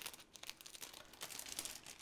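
Clear plastic cover film on a diamond painting canvas crinkling in a series of faint, short crackles as the canvas is handled and the film is lifted.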